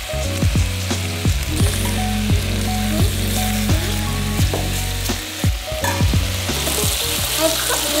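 Boneless chicken thigh pieces sizzling as they brown in hot olive oil in an enamelled pot, with a silicone spatula stirring and scraping them now and then.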